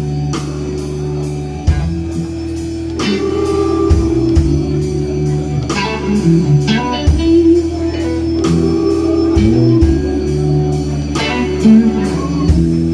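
Live blues band playing: electric guitar over a Hammond organ, bass guitar and a drum kit keeping a steady beat.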